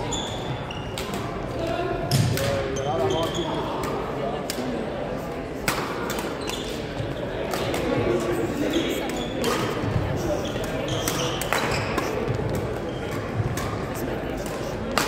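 Badminton doubles rally on a wooden gym court: sharp racket strikes on the shuttlecock every second or two, with shoe squeaks on the floor, echoing in a large hall over background voices.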